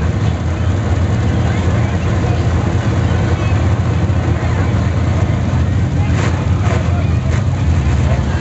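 Dirt-track race car engines idling, a steady low rumble.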